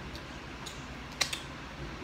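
A few small sharp clicks from eating with the fingers, the loudest a little past the middle, over a steady low hum.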